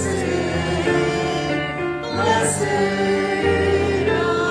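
A choir singing a slow hymn in long held notes, as music in a church service.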